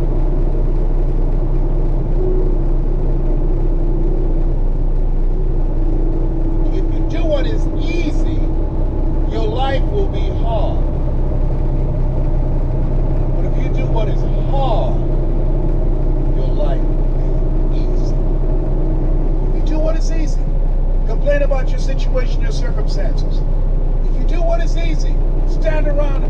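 Steady, even drone of a truck cab at highway speed: engine and road noise, with a steady hum underneath.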